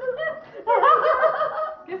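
People laughing, with the loudest laugh coming in a burst of about a second, starting under a second in.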